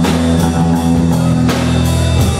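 A live rock band playing loud: electric guitar, bass guitar and a drum kit, with no singing.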